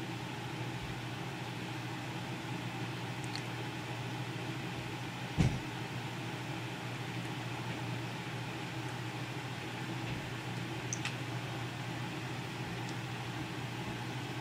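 Steady low background hum, with a single knock about five seconds in and a few faint clicks.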